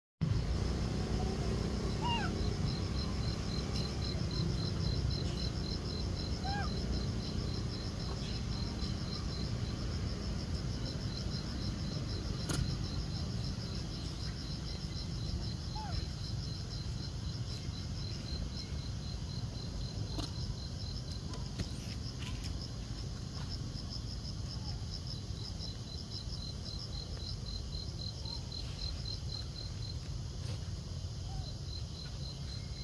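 Forest insects chirping in a fast, even pulse with two high overlapping trills, over a steady low rumble of background noise. A few faint short rising calls come through now and then.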